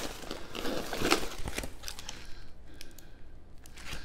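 Packaging rustling and crinkling as vacuum-sealed frozen meat packs are lifted out of a foam-lined shipping box, with scattered light clicks. It settles down over the last second or so.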